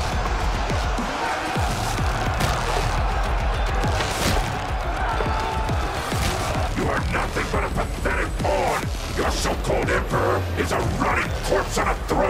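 Film soundtrack of a trench battle: a music score over dense noise with scattered crashing impacts. Voices come in about halfway through.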